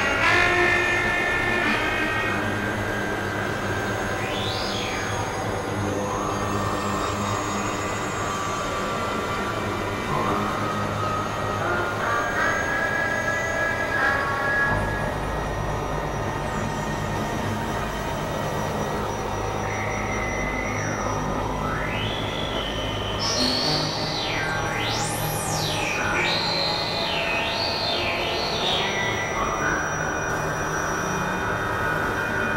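Experimental electronic synthesizer music: steady low drones under stepped, sustained higher tones, with pitch sweeps that glide up and down, the largest swooping very high about 25 seconds in.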